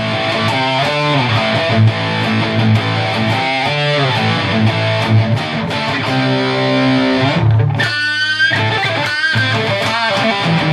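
Epiphone SG with a single bridge humbucker played through an Electro-Harmonix Metal Muff with Top Boost distortion pedal, gain at about halfway and EQ at noon, into a Randall RG100 amp's clean channel and a 4x12 cabinet. Heavily distorted riffs and chords, with a high bent note about eight seconds in.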